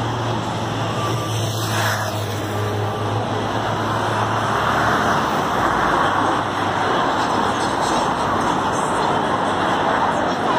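Road traffic on a busy city street: vehicles passing, with a steady low engine hum in the first few seconds that fades after about four seconds, and a passing vehicle swelling up about halfway through.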